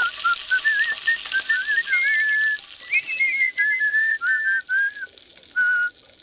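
A cartoon character whistling a meandering tune in short, wavering notes, ending on one held note near the end.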